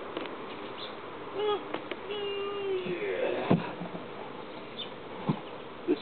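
Honeybees from a swarm buzzing around a hive, with a single bee's hum passing close twice, about one and a half and two to three seconds in. A wooden thump about halfway through as the hive boxes are set down, and a lighter knock near the end.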